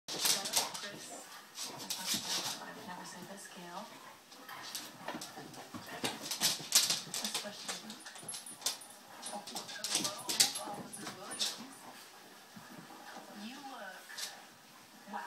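Two basset hounds play-fighting, with growls, whines and yips mixed with sharp clicks and scuffles as they tussle.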